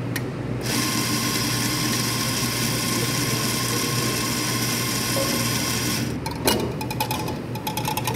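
Electric espresso burr grinder running steadily, grinding coffee beans into a portafilter; it starts under a second in and cuts off about six seconds in. A quick run of sharp clicks and knocks follows near the end.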